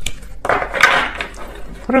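Tarot cards being shuffled by hand: a brief rustling burst about half a second in, with a sharp click or two.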